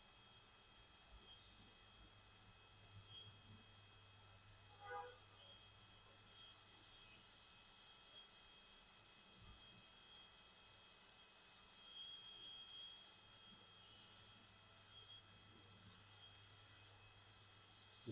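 High-speed dental handpiece whining with thin high-pitched tones that swell and fade unevenly as its bur cuts the labial face of an upper front tooth for a crown preparation.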